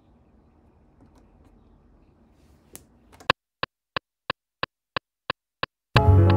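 Akai MPC metronome counting in before recording: eight short, evenly spaced clicks about three a second, the first one louder. Before it, a few seconds of faint room tone and a single soft click of a button being pressed.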